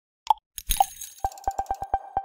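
Short animated-logo sound effect: two pops, a bright burst, then a quick run of even ticks over a held tone.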